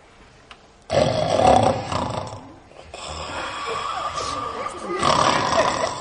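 Loud snoring that starts suddenly about a second in, easing off briefly in the middle and swelling again near the end.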